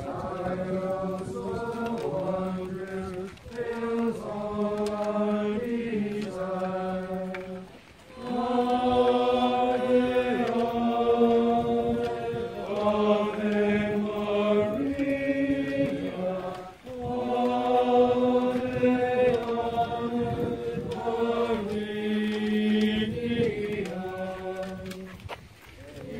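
A group of voices singing a chant-like processional hymn, in phrases held on steady notes with short breaks for breath. The singing grows louder about a third of the way through.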